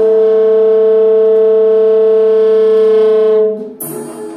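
Tenor saxophone holding one long, steady, loud low note that drops away about three and a half seconds in. Just before the end comes a sharp, ringing strike on the drum kit.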